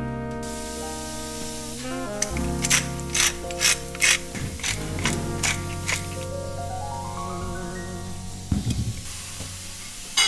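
Hand-twisted spice grinder being turned over a tray, a run of about eight grinding clicks, roughly two a second, over steady background music.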